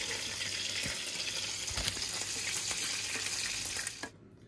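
Lamb kofta kebabs sizzling in hot oil: a steady sizzle with faint scattered crackles.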